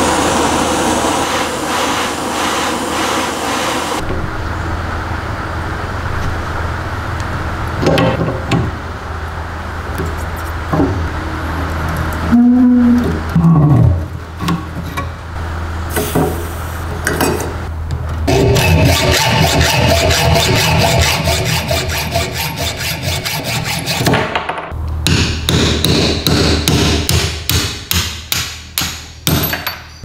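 A handheld butane blowtorch hissing as it heats a rust-seized wing screw for the first few seconds. This is followed by a series of workshop sounds on rusty metal: clinks and a brief falling tone as a part is handled in a small metal cup, a steady stretch of noisy running from a tool, and near the end a run of rapid scraping strokes that speed up.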